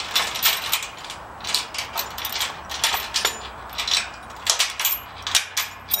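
Steel trailer safety chains clinking and rattling as they are handled and unwrapped from a trailer coupler, with many irregular metallic clinks.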